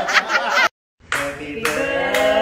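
A group clapping quickly and evenly, with voices over it. The clapping cuts off abruptly less than a second in. After a brief silence, voices singing.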